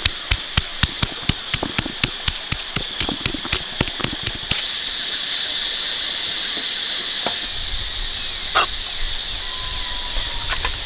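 A round stone pestle pounding red chilies and coarse salt in a hollowed stone mortar: sharp knocks about four a second that stop abruptly about four and a half seconds in. After that there is a steady high insect buzz, with one louder knock near the end.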